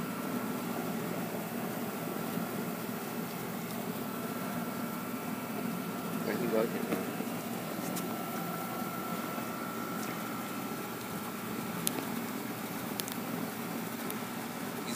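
Dog eating wet canned meat mixed with kibble from a stainless steel bowl, with a few sharp clinks, over a steady background hum.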